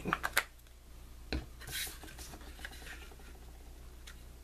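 Quiet tabletop handling of a glue stick and cardstock. There are a few light clicks, then a single knock about a second and a half in, and then a brief papery swish and soft rubbing as two glued pieces of cardstock are laid together and pressed flat.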